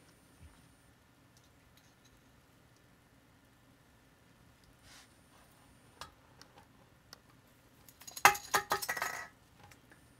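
A small plastic Christmas ball ornament dropping and clattering: a quick run of sharp clicks and rattles lasting about a second near the end, after a few faint handling clicks.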